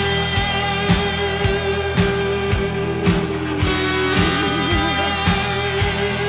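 Instrumental passage of a 1984 rock song: electric guitar playing over a steady drum beat, with one held note breaking into wide vibrato about four seconds in.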